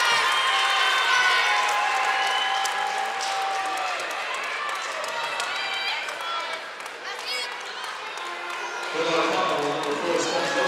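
Gymnasium crowd during a stoppage in play: many spectators' voices shouting and calling out over a steady hubbub, slowly quieting and then picking up again near the end.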